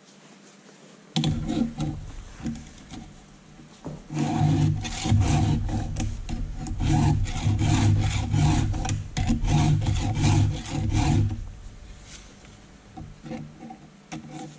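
Round and flat files of a PFERD CS-X chainsaw file guide rasping across the cutters and depth gauges of a vise-clamped saw chain in repeated strokes, sharpening cutter and depth gauge together. A few strokes come about a second in, then a steady run from about four seconds in that eases off near the end.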